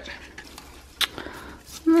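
Hands handling packaging: one sharp plastic click about halfway through, then faint rustling and ticks of shredded paper filler as an item is lifted out.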